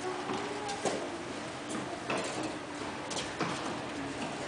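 Scattered knocks of tennis balls bouncing and being struck by children's rackets, a few seconds apart and echoing in a large indoor tennis hall, over a steady low hum.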